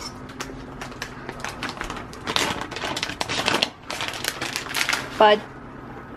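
A metal spoon scraping and tapping against the inside of a saucepan, a rapid irregular run of clicks and scrapes as the white sauce is scraped out.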